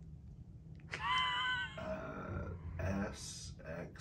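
A person's voice: a drawn-out, wavering vocal sound about a second in, then a few short muttered words with hissy consonants, as in hesitantly reading out letters.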